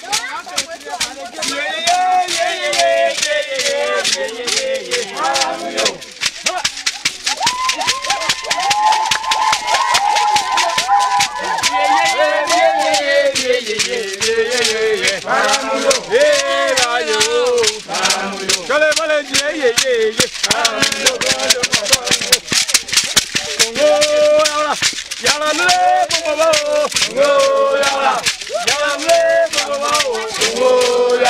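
Several large calabash gourd rattles wrapped in nets of beads or seeds, shaken in a fast, steady rhythm, with a group of voices singing over them.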